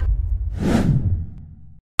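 A single whoosh sound effect that swells and dies away about half a second to a second in, over the deep bass of advert music that fades out near the end.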